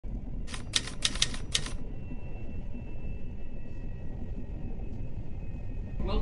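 A quick run of about six typewriter key clicks, starting about half a second in and over within about a second, over a steady low background rumble.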